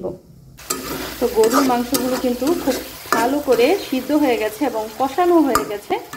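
Small pieces of beef frying in spiced oil in a karahi, sizzling steadily as a spatula stirs them; the sizzle starts suddenly about half a second in. A woman's voice talks over it.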